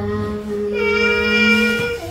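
A voice holding a long, steady, unwavering note, briefly broken about half a second in and stopping just before two seconds.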